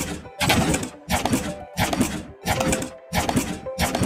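Footstep sound effects in a steady walking rhythm, a short noisy step about every two-thirds of a second, over faint background music.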